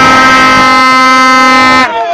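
A loud, steady horn blast held on one pitch for about two and a half seconds, cutting off shortly before the end.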